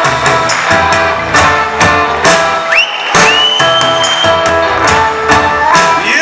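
Rock band playing live, with drums beating steadily under bass, guitars and keyboard. About three seconds in a high, thin note slides up and holds for over a second.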